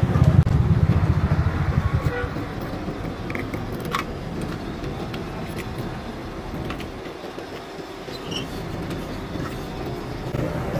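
A 70cc single-cylinder motorcycle engine running with rapid low firing pulses. Its sound drops away about two seconds in, leaving a quieter background with a few scattered clicks.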